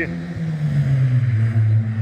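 A low engine hum running steadily, dropping in pitch a little over a second in and then holding at the lower pitch.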